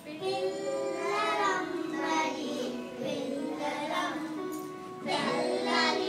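A group of preschool-age children singing a song together, in phrases of held notes with short breaks between them.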